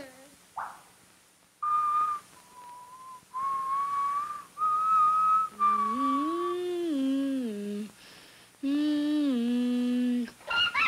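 A slow whistled tune of a few held notes, joined about halfway through by a lower, buzzier tone that steps up in pitch and back down, pauses briefly, then returns on two held notes near the end.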